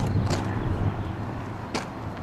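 Low steady vehicle rumble with a short sharp click near the end.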